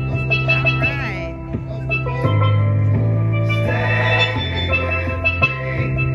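Steelpan (steel drum) playing a quick melody of ringing struck notes over a low bass line that holds each note for a second or two before changing.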